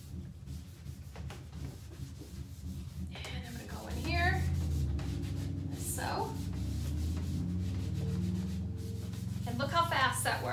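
Foam buffer pad rubbing back and forth by hand over a waxed, painted wood surface, buffing off liming wax. The scrubbing is steady, growing louder about four seconds in.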